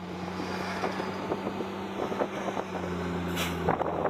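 Armoured military vehicle's engine running as it drives, a steady low hum with scattered rattles and knocks. A brief hiss comes near the end, and the engine note changes just after it.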